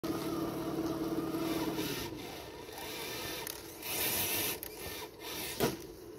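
A scale RC crawler's electric motor and gears whining steadily for about two seconds as it climbs rock, then dropping away. This is followed by scraping and rustling through dry leaves and over rock, with a louder rustle near the middle.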